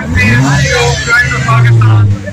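Ford Mustang engine revving: the pitch rises over the first half-second, then is held steady and loud. Voices are heard over it.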